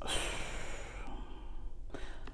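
A woman's breathy exhale, a sigh close to a clip-on microphone, fading away over about a second and a half.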